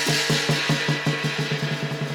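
Qilin dance percussion: a drum beaten in a fast, even run of about five strokes a second, over a bright cymbal wash that thins out after about a second.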